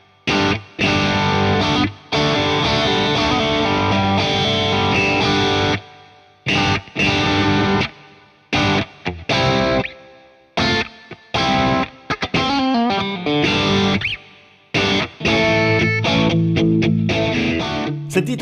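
Fender Telecaster Player Plus Nashville electric guitar played on its neck-plus-bridge pickup setting, the most typical Telecaster tone, here a little more precise and modern. Rhythmic chords are cut off sharply into short gaps, with a few sliding notes about two-thirds of the way through.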